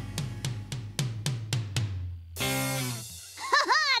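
A drum kit playing a steady run of strikes, about four a second, which ends a little past two seconds in on a short held chord. A voice starts near the end.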